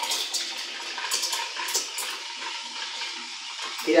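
Espresso machine steam wand steaming milk in a jug: a steady, strong hiss with irregular crackles as the steam hits the milk. It gives a lot of steam power.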